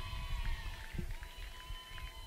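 Faint outdoor ambience at a ballfield: a low rumble with a faint, steady high-pitched tone and no clear single event.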